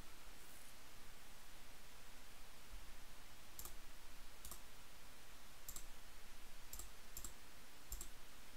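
Computer mouse button clicked about six times, in short sharp single clicks spread over the second half, one of them coming as a quick double, over a faint steady hiss.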